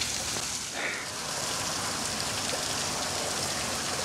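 Water from a stone-wall garden water feature, its thin streams falling into the pool below with a steady, even splashing hiss.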